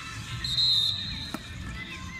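A short whistle blast, about half a second long, a single high steady note, heard just after the start over low crowd and field noise at a youth football match; a sharp tap follows a little later.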